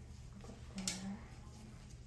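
Quiet room with a steady low hum, broken by a single sharp click a little under a second in, heard with a brief low hum-like tone.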